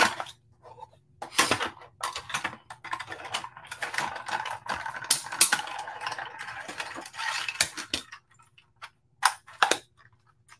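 Manual die-cutting machine in use: clear cutting plates clacking as they are set on the platform, then the plate sandwich cranked through the rollers with a continuous rasp for about five seconds, and a couple of sharp clacks near the end as the plates are taken off.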